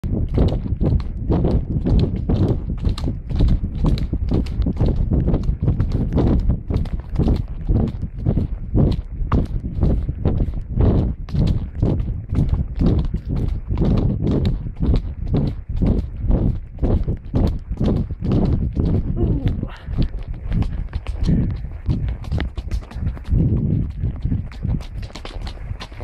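A horse's hoofbeats on a gravel forest track at a gallop, heard from the saddle: a fast, steady rhythm of sharp strikes that grows sparser near the end.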